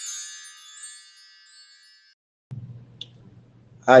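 Shimmering, chime-like sound effect of a logo intro, many high ringing tones fading away over about two seconds. A low steady hum comes in about halfway through, with a faint click, before a man says "Hi" at the very end.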